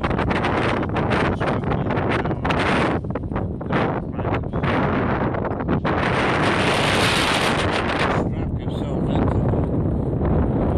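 Wind buffeting the microphone in loud, uneven gusts, with a stronger sustained gust about six seconds in that drops away a little after eight seconds.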